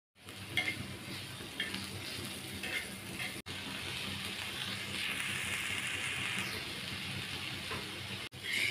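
Vegetables sizzling in hot oil on a flat iron tawa, first sliced onions and green chillies stirred with a steel spatula that scrapes about once a second, then strips of potato and carrot with peas. The sizzle breaks off for a moment about three seconds in and comes back steadier.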